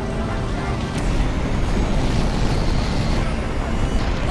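Low rumbling roar of an aircraft flying overhead, growing louder about a second in, with a sharp click at that moment.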